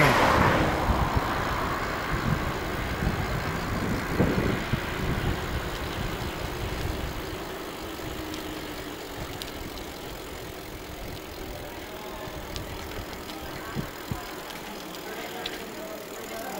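A car passing close alongside, its noise loudest at the start and fading away over several seconds, leaving a lower steady rush of road and wind noise.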